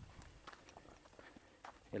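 Faint footsteps of a person walking on dry grass and earth, a few soft scuffs against a quiet outdoor background.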